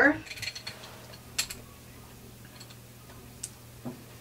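Light handling noise and a few faint clicks as a rubber brayer is worked over acrylic paint on a gel printing plate, with sharper clicks about a second and a half in and twice near the end.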